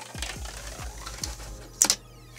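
Plastic diffuser strip being slid and pried out of an aluminium LED channel: a run of small clicks and scrapes, with one loud sharp scrape near the end.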